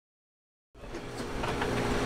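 Dead silence, then about three-quarters of a second in a steady mechanical hum of room tone comes up, with a few faint clicks of packets being handled.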